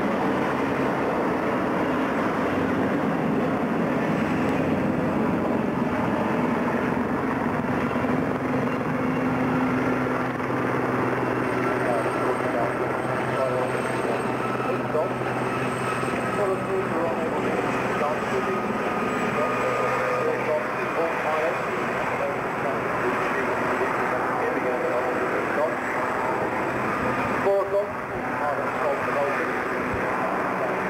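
Boeing Stearman biplane's radial engine running steadily at taxiing power, a low even hum, with a brief dropout a little before the end.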